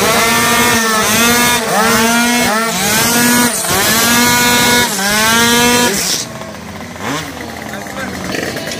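Tuned two-stroke racing scooter engine revved hard at a high pitch. The note dips and climbs again about once a second, then drops away about six seconds in, with one short rev after.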